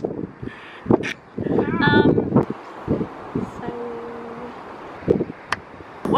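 Wind buffeting the microphone in uneven gusts, with a few brief fragments of a woman's voice about two seconds in.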